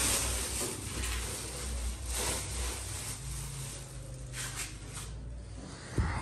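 Rustling and scuffing handling noises over a steady low hum, with a few short noisy bursts and a sharp click at the very end.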